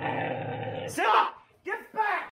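A Siberian husky vocalizing during whelping: a steady strained sound for about a second, then two short loud cries, each rising and falling in pitch.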